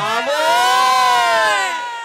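One long held note from the live folk-music performance, rich in overtones, gliding up in pitch and back down over about two seconds before it fades.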